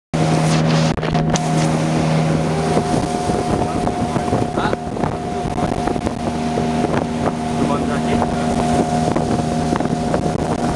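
Outboard motor of a small aluminium boat running steadily under way, with wind buffeting the microphone and a few brief knocks.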